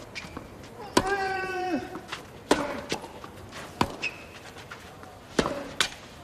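Tennis ball being hit back and forth by rackets on a clay court, a sharp crack every second or so. A player grunts loudly on the shot about a second in.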